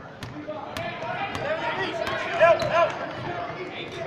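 Basketball dribbled on a hardwood gym floor, sharp bounces about every half second in the first couple of seconds, with voices of spectators and players filling the hall and loudest about halfway through.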